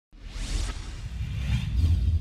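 Broadcast title-graphic sound effect: a whoosh sweeps in just after a brief silence, over a deep rumble that swells toward the end.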